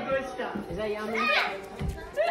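Indistinct voices, including a baby vocalizing, over background music.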